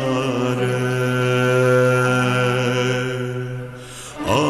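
A male singer holding one long, steady note in a Turkish classical song in makam Suzinak; the note fades away just before the end.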